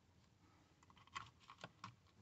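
Near silence, then a few faint plastic clicks and taps in the second half as a wiring harness connector is handled and fitted against a car's power window master switch housing.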